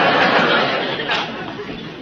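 Studio audience laughing, the laughter fading out.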